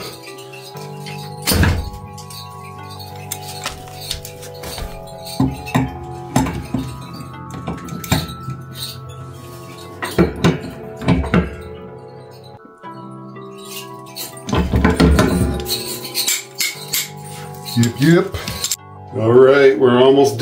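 Background music with held notes, over scattered metallic clinks and knocks from a pipe wrench working a threaded union fitting on the water pipe.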